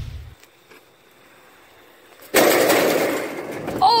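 A child falling on aluminium bleachers: a sudden loud crash about two seconds in, with a noisy rattle that dies away over about a second and a half.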